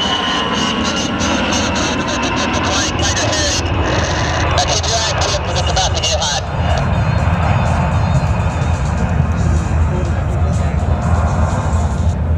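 An A-10 Thunderbolt II's twin TF34 turbofan engines passing slowly overhead. Their high whine falls in pitch over the first second, and the low end grows heavier after about six seconds.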